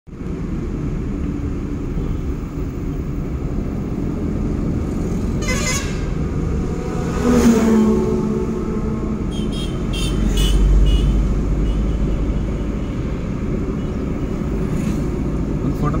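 Road traffic heard from a moving vehicle: steady engine and road rumble, heavier for a moment around ten seconds in. A vehicle horn sounds briefly about seven seconds in, and a few short high beeps follow a couple of seconds later.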